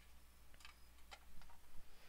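A few faint, light clicks from a clear plastic petri dish being handled.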